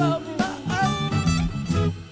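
Acoustic guitars picking and strumming a loose, bluesy groove, with a man's voice singing over it.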